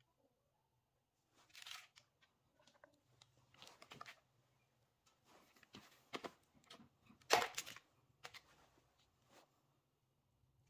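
Handling sounds of PVC conduit, LB fittings, primer and cement cans, and paper: scattered short scrapes, rustles and clicks. The loudest is a sharp knock and clatter a little past seven seconds.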